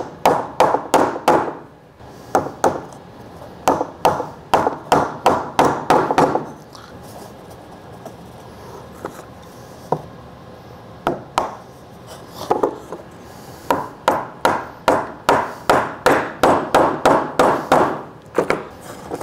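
A soft-faced mallet knocks wooden loose tenons into tight-fitting, CNC-cut mortises and taps the mating board down onto them. The knocks on wood come in quick runs of several strikes, with a pause of a few seconds midway that holds only a few single taps.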